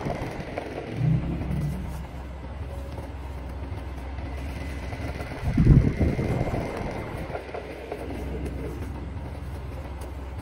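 A steady low rumble like a running engine, with a louder low surge of rumble about six seconds in.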